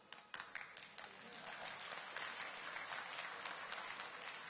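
Audience applause, faint at first and slowly building over the first second or two into a steady clatter of many hands clapping.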